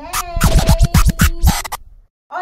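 A short music sting with DJ-style turntable record scratching: a quick run of scratch strokes over a held note and deep beats, cutting off abruptly near the end.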